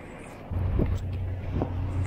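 Low, steady rumble of busy city street noise, traffic at a wide downtown intersection, that comes up about half a second in, with a few faint passing sounds above it.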